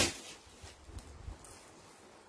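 The tail of a woman's spoken word, then a quiet room with a few faint, soft rustles of clothing being handled.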